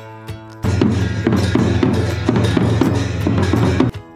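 Live festival drumming: a large two-headed barrel drum beaten in a fast, steady rhythm with clashing hand cymbals over it, loud. It comes in about half a second in and cuts off abruptly just before the end.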